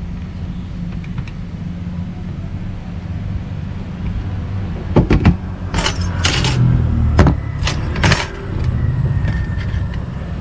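A bunch of keys on a keyring jangling and clinking in a hand, a quick cluster of sharp clicks and jingles about halfway through, over a steady low rumble.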